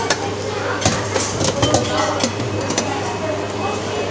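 Stainless steel serving tongs and container lids at a salad bar clinking several times in quick, irregular succession. Background voices and a steady low hum sit underneath.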